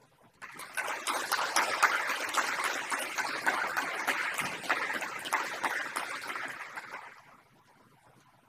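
Applause from a small audience, made up of many quick claps. It begins about half a second in and dies away about a second before the end.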